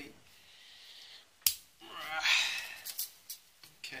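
Side cutters snapping through a thin strip of perforated steel case bracket with one sharp click about one and a half seconds in, followed by about a second of rough, noisier sound.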